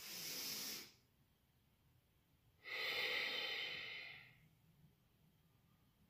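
A woman breathing in time with slow arm circles: a short breath right at the start, then, after a pause, a longer breath lasting about two seconds.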